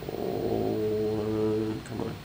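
A man's voice holding one long wordless sound on a steady low pitch, like a drawn-out hum, for nearly two seconds.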